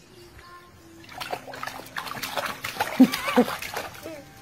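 Water splashing and slapping in short spatters from about a second in, as a baby plays in a small plastic tub of water. A baby's squealing laughter comes near the end.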